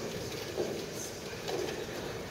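Quiet hall between songs: faint shuffling and low murmur, with a few small knocks.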